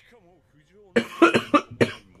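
A man coughing: a quick run of about four coughs into his fist, starting about a second in. He has a cold.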